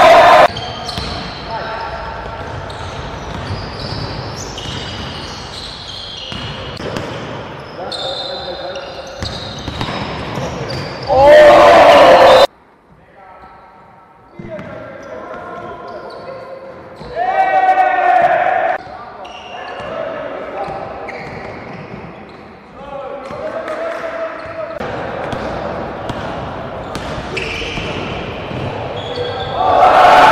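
Basketball game sound in an echoing gymnasium: a ball bouncing, short squeaks, and players' voices. A few very loud bursts of sound break in, near the start, about a third of the way in, about halfway through, and at the end.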